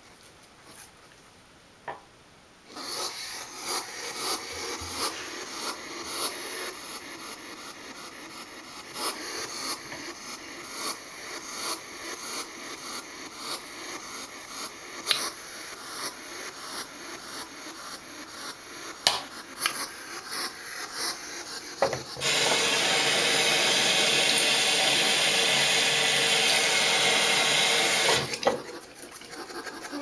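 Toothbrush bristles scrubbing through a hedgehog's quills, a scratchy rasping with many small clicks that begins about three seconds in. Near the end a sink tap runs steadily for about six seconds, then shuts off abruptly.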